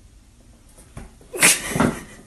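A soft knock about a second in, then a short, harsh, breathy sound from a cat, about half a second long.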